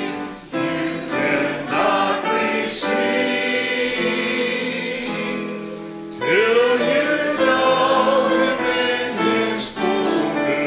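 Congregation singing a hymn together, in phrases, with a long held note in the middle before the next line begins.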